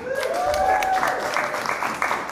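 Audience applauding with many hand claps, a voice heard over the first second.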